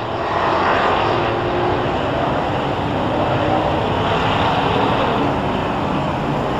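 A field of dirt-track stock car engines running together at caution pace, heard as a steady drone of many engines with faint pitches that drift up and down.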